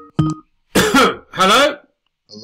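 The last brief note of a Skype incoming-call ringtone, cut off as the call is answered, then a person clearing their throat twice.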